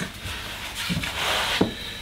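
Paper rustling as a notebook is opened and its pages handled on a tabletop, with a couple of light clicks.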